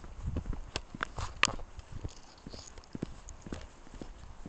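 Footsteps of a person walking downhill on a path of concrete grass-grid pavers and gravel: irregular hard knocks and scuffs, with a few sharper clicks about a second in.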